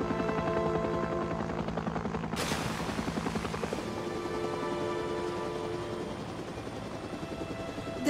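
Helicopter rotor chop, a fast steady beating, under a sustained dramatic music score from the TV episode's soundtrack; a rush of noise swells in about two seconds in.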